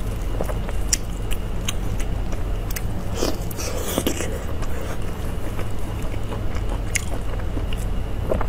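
Close-miked wet eating sounds: a sauce-soaked braised meat ring pulled apart by gloved hands, then bitten and chewed, with sticky clicks and smacks, thickest about halfway through. A steady low hum runs underneath.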